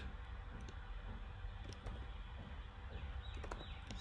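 Scattered key clicks of typing on a computer keyboard, a few keystrokes at a time, over a low steady hum.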